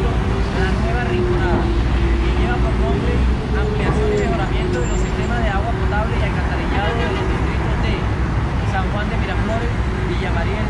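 A man talking over the constant low rumble of road traffic and site noise, with a steady drone that wavers slightly in pitch underneath.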